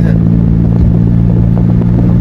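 Daihatsu Cuore's small three-cylinder engine running steadily while driving, with road noise, heard from inside the cabin as a loud, even drone.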